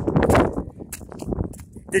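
Wind buffeting the phone's microphone, dying down about half a second in, followed by faint scattered clicks and rustles.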